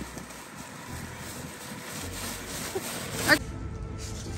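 Low wind rumble on the microphone, with one short, loud, rising cry near the end, after which the sound drops away abruptly.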